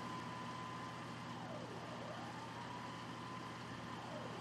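Emergency-vehicle siren, faint over outdoor background noise: a steady high tone that sweeps down in pitch and back up about halfway through, and starts to dip again near the end.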